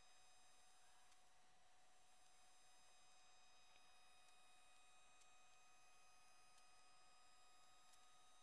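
Near silence: room tone with only faint steady electrical tones.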